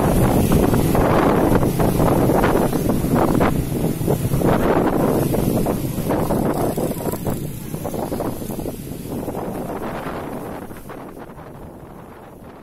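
Passenger train running away down the track, its wheels rumbling and clattering on the rails, the sound fading steadily over the last half as it draws off. Wind buffets the microphone throughout.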